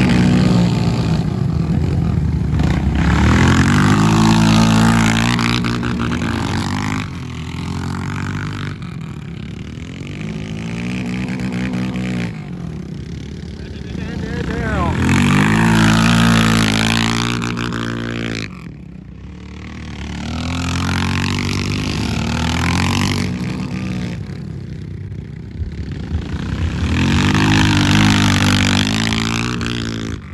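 Dirt-bike engines revving and easing off as riders lap a tight dirt flat-track course, the sound swelling and fading again and again as the bikes pass close by and move away.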